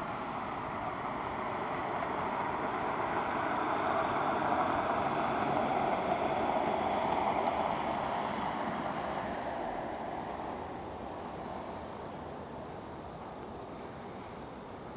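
A car driving past on a snow-covered road, its tyre and engine noise swelling to a peak about five to seven seconds in and then fading away.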